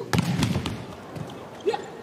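Indoor volleyball match sound: a few sharp knocks of the ball being struck, most of them in the first half, over steady arena crowd noise.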